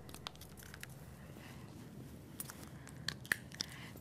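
Faint handling noises at a whiteboard: a scatter of small clicks and light rustles as a marker is taken up, with two sharper ticks a little after three seconds in.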